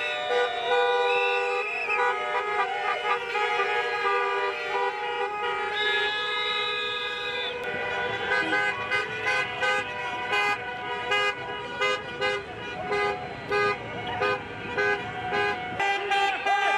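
Many car horns honking together in protest in a traffic jam: several long held notes overlapping, then from about halfway a fast run of short beeps.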